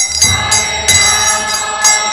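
Kirtan music: small brass hand cymbals (karatals) struck about every half second to a second, each strike ringing on in high, bell-like tones, over low drum beats and a group of voices chanting.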